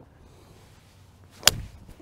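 A golf iron striking a ball off the grass: one sharp crack about one and a half seconds in.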